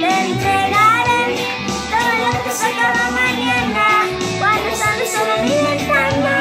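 A young girl singing over recorded pop music with guitar.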